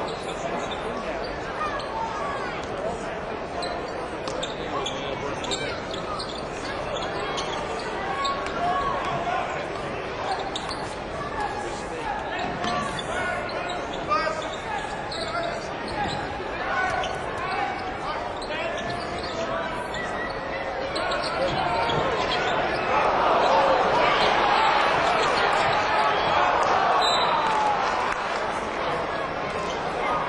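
Basketball game in an arena: a ball bouncing on the court under a steady crowd murmur, the crowd growing louder over the last several seconds.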